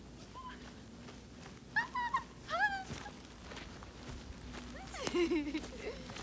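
A woman's voice: two short high squeals about two seconds in, then a burst of laughter near the end.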